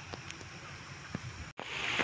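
Rain falling on a flooded river and the bankside foliage: a soft, even hiss with a few faint drop ticks. It cuts out for a split second about three-quarters through and comes back louder.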